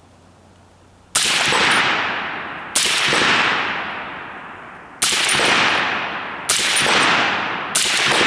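Five suppressed rifle shots from an AR-style rifle fitted with a Griffin Armament Optimus suppressor, fired at an uneven pace about one to two seconds apart. The shots start about a second in. Each one is a sharp crack followed by a long fading echo.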